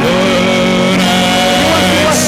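Loud live worship music from a band with electric guitar, holding long sustained notes with a buzzy, distorted tone.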